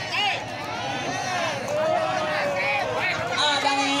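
Crowd of spectators and players talking and calling out over one another, several voices at once.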